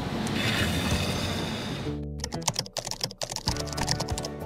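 Background music, joined about halfway in by a rapid run of keyboard-typing clicks. The clicks are a typing sound effect for on-screen text being typed out.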